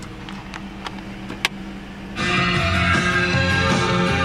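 Crown Victoria's factory AM/FM/CD car stereo switching on about two seconds in and playing guitar rock music through the cabin speakers. Before it starts there is only a steady low hum and a few faint clicks.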